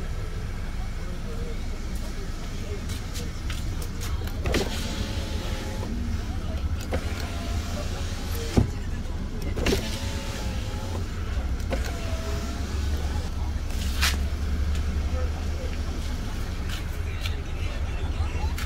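Power window motor in the rear door of a 2012 Audi A4 running as the glass moves, a faint whine through the middle stretch. A few sharp clicks and knocks from the door and switch come over a steady low hum.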